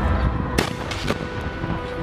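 Two sharp bangs of gunfire in combat, about half a second apart, with music playing steadily underneath.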